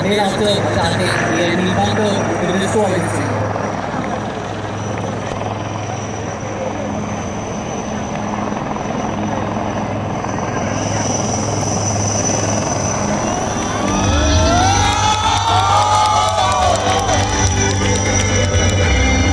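Two military utility helicopters fly low over the field, their rotors making a steady thudding rumble. The low rumble grows louder about fourteen seconds in as they come nearer.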